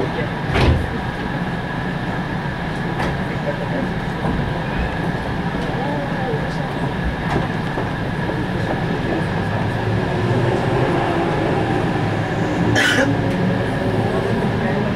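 Cabin noise of a JR West 221 series electric train pulling away from a station: a steady hum with a single knock about half a second in, then the running noise grows as the train picks up speed. Near the end comes a brief sharp rush as another train passes close alongside.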